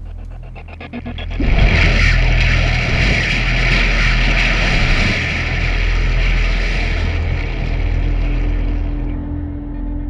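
Film soundtrack: a low steady musical drone. About a second and a half in, a sudden loud rush of liquid pours and splashes down over a crowd. It runs on and eases off near the end.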